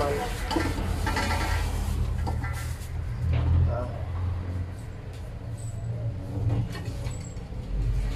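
Low engine rumble like a motor vehicle running, swelling about three seconds in and then easing, with light handling of raw meat in a steel basin and a short spoken "ah".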